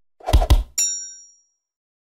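Animated logo sound effect: two quick low thumps, then a single bright, bell-like ding that rings briefly and fades away.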